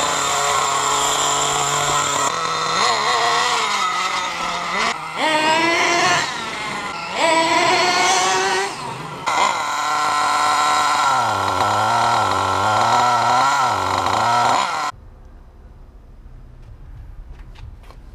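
The 4.6 cc nitro glow engine of a four-wheel-drive RC monster truck running, its pitch rising and falling again and again as the throttle is blipped while it drives. The engine sound cuts off suddenly about fifteen seconds in, leaving a much quieter background.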